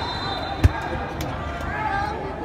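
A football being kicked: one sharp thud about two-thirds of a second in, over the chatter of voices around the pitch.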